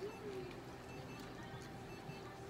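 A Bichon Frise gives one short whine at the very start, its pitch rising sharply and then sliding back down, over faint steady background music.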